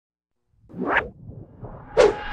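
Whoosh sound effect from an animated intro: silent at first, then a rising swoosh that peaks about a second in, a softer low rumble, and a sharp hit at the very end.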